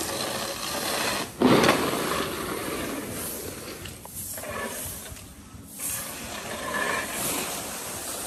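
Twig brooms and a grain rake sweeping and pushing drying rice grain across concrete: a rustling, scraping hiss in strokes, with one louder stroke about a second and a half in.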